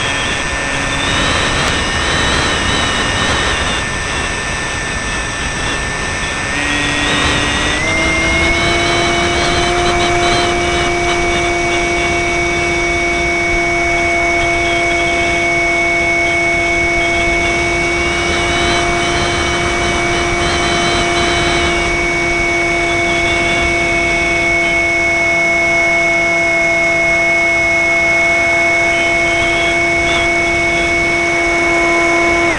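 Electric motor and propeller of a Multiplex FunCub RC model plane, recorded by its onboard camera: a steady whine over rushing air noise. About seven to eight seconds in, the whine steps up a little in pitch as the motor speeds up, then holds steady.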